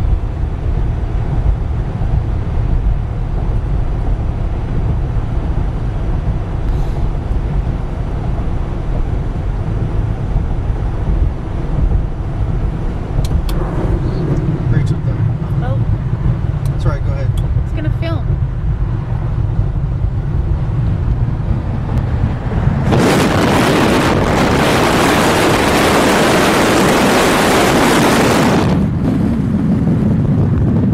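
Steady low road rumble of a car driving, heard from inside the cabin. About 23 seconds in, a loud rush of wind hits the microphone for about six seconds, then drops away, leaving the rumble.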